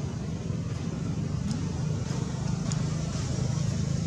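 Steady low rumble of background road traffic, with a couple of faint ticks.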